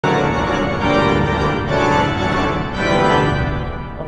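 Austin pipe organ played loud on full organ with its horizontal trumpet (chamade) stops drawn: sustained chords that change about twice, then die away in reverberation near the end.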